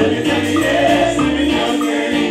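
Live gospel music: voices singing held notes over a band with drums and bass guitar.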